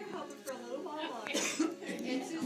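Indistinct talking, with a cough about two-thirds of the way through.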